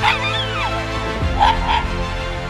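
Small stray dog giving a falling whine, then two short barks about a second and a half in, over background music.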